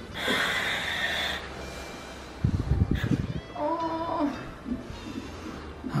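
A woman in labour breathing in gas and air through a mouthpiece, the demand valve hissing for about a second, then a few low bumps and a short moan through a strong contraction.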